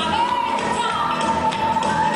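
Rock'n'roll dance music playing, with the tapping of the dancers' shoes on the stage floor.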